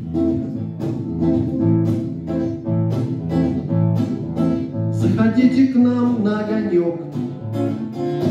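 Acoustic guitar strummed in a steady rhythm, about two strokes a second, as a song's introduction; about five seconds in, a sliding tune joins over the strumming.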